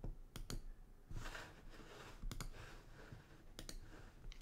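Faint clicking at a computer: three quick double clicks, spaced a second or more apart, in a small quiet room.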